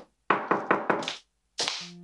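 Four quick knocks in a row, followed near the end by music starting on a low sustained note.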